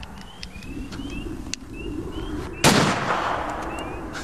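A single handgun shot about two and a half seconds in: one sharp crack followed by about a second of fading echo.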